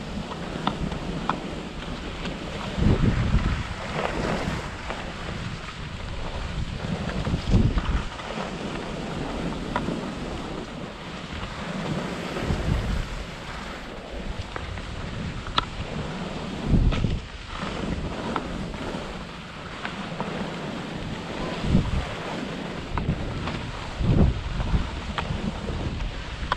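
Wind noise on the microphone of a ski-pole-mounted GoPro, surging in uneven gusts, over a steady hiss of skis sliding on packed snow.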